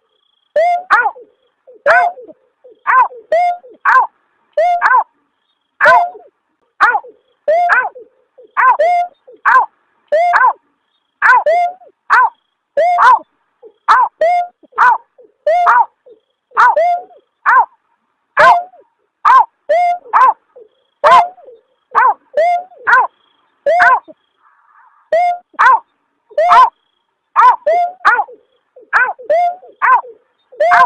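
Bird-lure recording of the berkik (snipe) call, which the uploader also calls beker or punguk: a steady series of short 'aw' calls, each dropping in pitch at the end, about one and a half a second.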